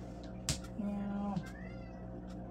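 A mahjong tile clacks onto the table about half a second in, followed by a short, steady low hum. Near the end a cat meows once, the call rising and then falling in pitch.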